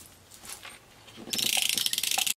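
Handheld glue dots roller dispenser being run along paper, its mechanism clicking rapidly and loudly from about a second and a half in, after some soft paper handling.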